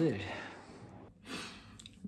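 A man's word trailing off, then mostly quiet room sound with one short breathy exhale, like a sigh, about a second and a half in.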